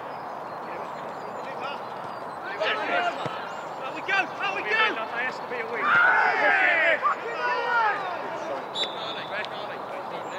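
Men shouting across an amateur football pitch over open-air background noise, with one loud drawn-out shout about six seconds in as a player challenges for a high ball. A short high whistle sounds near the end.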